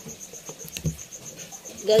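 A cricket chirping in the background: a fast, even run of high pulses. A few short clicks come near the middle as scissors and a plastic bottle are handled.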